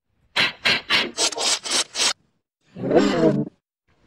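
Digitally distorted sound-effect clip: a quick run of about seven short, harsh noisy bursts, then a brief wavering pitched sound.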